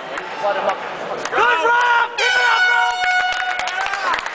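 Arena crowd shouting, then about two seconds in a steady electronic horn sounds for about a second and a half: the horn marking the end of the round.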